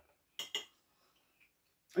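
A metal fork tapping a plate twice: two light clicks in quick succession.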